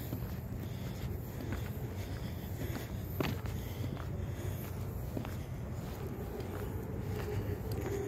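Footsteps of one person walking on pavement partly covered with snow and ice, faint irregular steps over a steady low background rumble.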